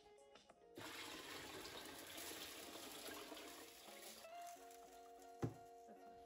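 Water poured from a container into a small glass aquarium over gravel: a steady rushing splash from about a second in until about four seconds, over soft background music. A single sharp click near the end.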